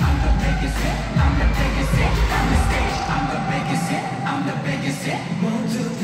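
Live K-pop concert music played loud through an arena sound system and recorded from the stands, with a heavy bass beat. About halfway through, the bass drops out and leaves a thinner, sparer passage. The full beat comes back right at the end.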